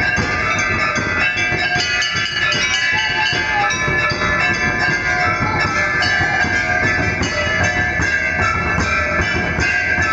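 Continuous music with percussion and sustained bell-like ringing tones, steady in loudness throughout.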